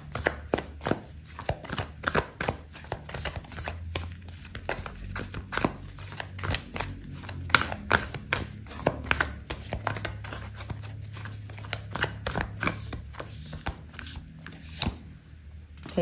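A deck of oracle cards being shuffled by hand: a quick, irregular run of card slaps and flicks that stops shortly before the end.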